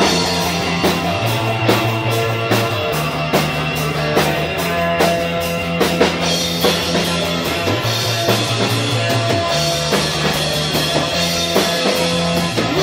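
Live rock band playing an instrumental stretch without vocals: drum kit keeping a steady beat, electric guitars, and a bass holding long notes that shift every second or two.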